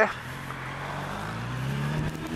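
Suzuki Bandit's inline-four motorcycle engine pulling, its pitch rising slowly as the bike accelerates, over steady wind and road noise.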